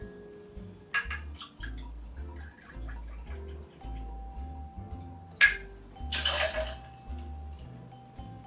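Whiskey poured from a glass bottle into a metal jigger and tipped into a copper shaker tin over ice, with a short splash about six seconds in and a couple of sharp clinks. Soft background music with a steady bass line plays throughout.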